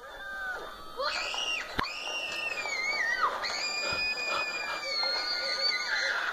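Girls screaming, high-pitched and drawn out: one scream about a second in that falls away at its end, then a longer, steadier one from about three and a half seconds in.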